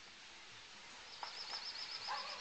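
A small songbird's rapid high trill of about a dozen notes, a little past a second in and lasting under a second, over faint outdoor hiss.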